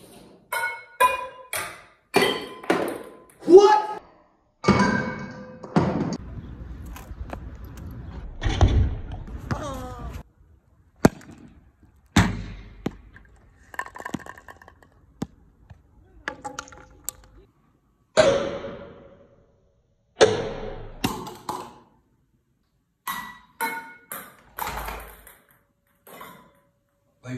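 A string of sharp knocks and ringing metallic clinks from ping-pong balls bouncing off pans, bottles and other household objects, with short shouts and exclamations between them.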